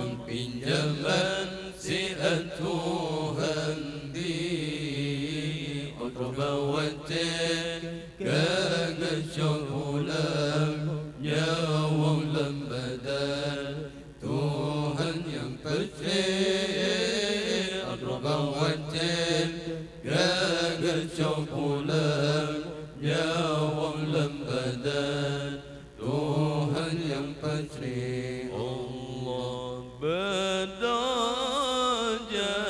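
Melodic Quran recitation by a male reciter into a handheld microphone. Long, drawn-out phrases with ornamented, wavering pitch are broken by short breath pauses.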